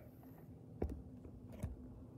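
Quiet room tone with a faint steady low hum, broken by two soft clicks a little under a second apart.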